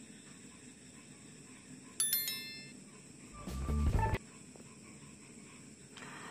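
A short, bright bell-like ding about two seconds in that fades in under a second, then a louder, lower sound lasting under a second that cuts off abruptly just after four seconds, over quiet room tone. These are sound effects of an animated subscribe-button overlay.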